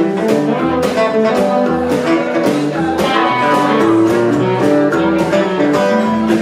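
Live band playing an instrumental passage: strummed acoustic guitar and electric guitar over drums keeping a steady beat.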